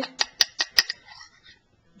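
About five quick, light clinks of glassware in the first second, with a faint ring that fades away.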